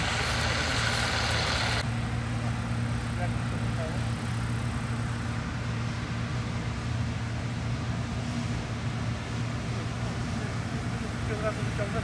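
Bizon combine harvester running steadily while harvesting peas, its diesel engine giving a low, even drone. For the first two seconds, up close, a loud hissing clatter from the header and threshing gear sits over the engine and stops suddenly.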